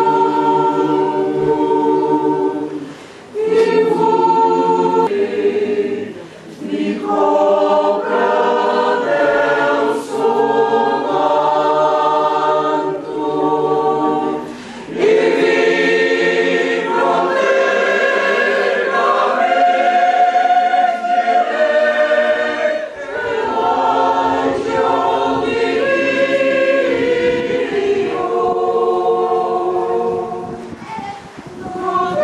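A choir singing long, sustained phrases with brief pauses between them.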